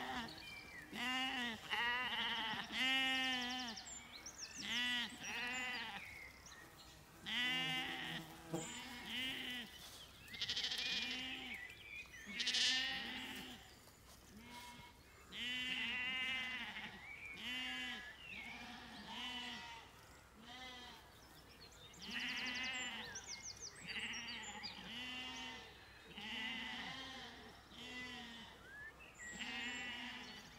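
Zwartbles sheep bleating over and over, one short call after another, about one a second, with more than one animal's voice.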